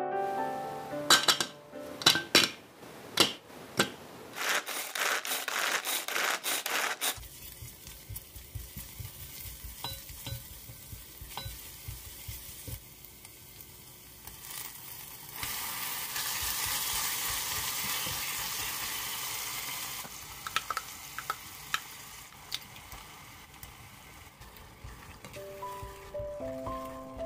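Kitchen prep sounds: sharp clicks and clatter from a small food chopper in the first seconds, then soft tofu and minced garlic sizzling in hot oil in a cast-iron pot, a steady hiss for several seconds past the middle, followed by a spatula stirring and tapping in the pot.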